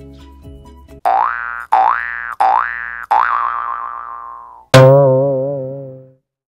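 Cartoon boing sound effects. There are four quick boings about two-thirds of a second apart, each rising in pitch. Near the end comes one louder boing with a wobbling pitch that fades away.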